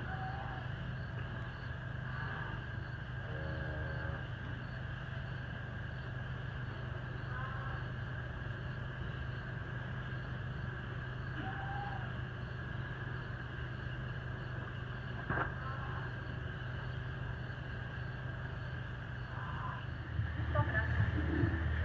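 Cattle barn ambience: a steady low hum and background noise as steers feed on hay, with one brief low moo a little over three seconds in and a single sharp click near the three-quarter mark.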